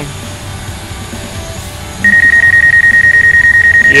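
DJI GO app obstacle-proximity warning beeping as the Mavic Pro drone closes on a truck about 5 ft away. A loud, high-pitched, rapidly pulsing tone starts about halfway through and keeps going, after a stretch of steady low rumble.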